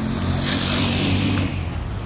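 Street traffic: a motor vehicle passes close by, its engine hum and tyre hiss swelling about half a second in and fading again before the end.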